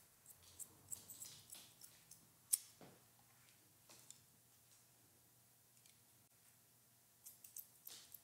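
Faint, scattered snips and clicks of haircutting shears closing on wet hair, with one sharper click about two and a half seconds in and a short run of snips near the end.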